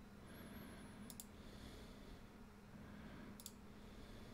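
Near silence: faint room tone with a low steady hum and two faint clicks of a computer mouse, about a second in and near the end.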